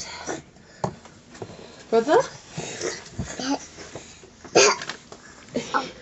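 Speech: short spoken words and a laugh in a small room, with brief vocal noises between them.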